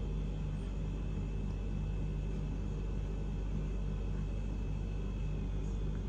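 Steady low background hum and rumble, with no distinct events.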